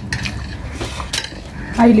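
Fingers scraping up rice on a metal plate, with a few light clicks and clinks against the metal. A voice begins near the end.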